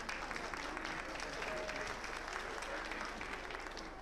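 Audience applauding: dense, steady clapping that thins out near the end.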